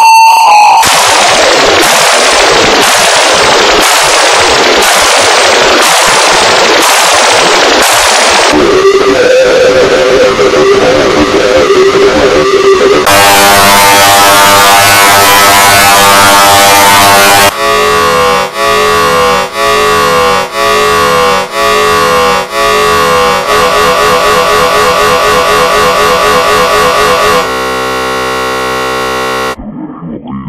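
Heavily distorted, edited emergency-alert-style electronic audio. It opens as loud harsh noise with a falling sweep repeating about once a second, shifts to noise under a low steady tone, then to a loud buzzing stack of tones. That is chopped on and off about once a second and ends on a quieter steady chord of tones.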